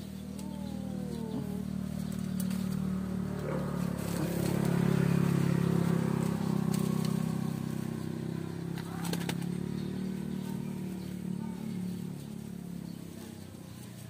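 A motor vehicle's engine running steadily, growing louder to a peak about five seconds in and then slowly fading, as it passes by. A few short clicks come about nine seconds in.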